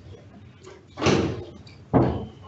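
A door opening in the room, a rush of sound about a second in, with a sharp knock just before the end.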